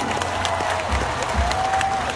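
Crowd applauding and cheering, a dense patter of many hands clapping.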